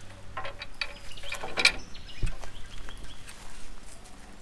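Scattered light clicks and knocks of a Stedi Type-X Pro LED driving light and its mounting bracket being handled and set in place on a bull bar, with a sharper clink and then a low thump around the middle.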